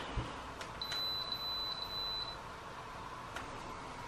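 Autel EVO drone beeping as it powers down: a single high, steady beep of about a second and a half, starting about a second in, with a few short pips on it. Faint clicks of handling come before and after.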